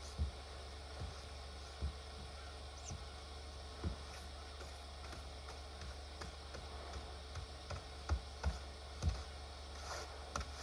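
Faint, dull thumps at irregular intervals, a few in the first four seconds and a quick cluster near the end, as snow is knocked and brushed off a car by hand, over a steady low rumble.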